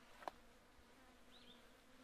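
Near silence with a faint, steady insect buzz, like a fly hovering close by, and a single soft click about a quarter of a second in.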